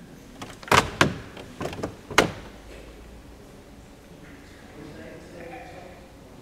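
A quick run of sharp knocks and clunks, about five within a second and a half, starting just under a second in.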